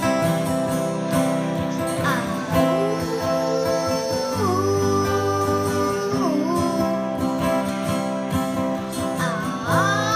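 Acoustic guitars strummed live, with a voice singing long held notes that slide from one pitch to the next.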